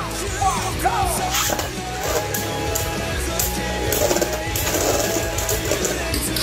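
Rock background music with a countdown sound effect, then Beyblade Burst spinning tops launched into a plastic stadium, scraping and clacking against each other.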